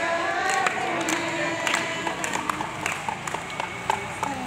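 Women singing a Hindi devotional song together as a group, voices holding long wavering notes, with scattered sharp claps or clicks through it.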